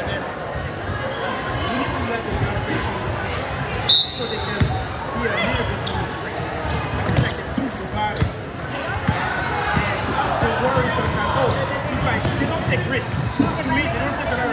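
Basketball dribbled on a hardwood gym floor, with voices all through the echoing hall. A brief high-pitched note sounds about four seconds in.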